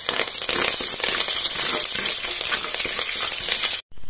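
Curry leaves, lentils and mustard seeds sizzling and crackling steadily in hot oil, the tempering for a thoran. The sound breaks off for a moment near the end.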